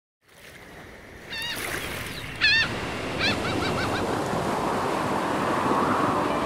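Waves washing on a lake shore, with wind, fading in over the first second. A bird gives wavering calls about one and a half and two and a half seconds in, the second the loudest, then a quick run of short calls.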